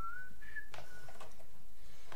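A man whistling softly under his breath, three short notes in the first second, the first sliding upward and the next two held, with a couple of faint clicks as he plugs a cable into a small mixing desk, over a steady low hum.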